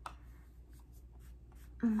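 Faint, scratchy rubbing of a makeup applicator being pressed and worked over the skin to apply face powder, with a single sharp click right at the start.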